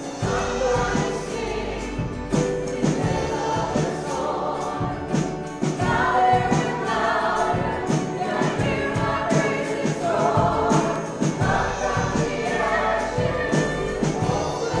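A live worship band plays a song with singing voices: acoustic and electric guitars over a drum kit keeping a steady beat.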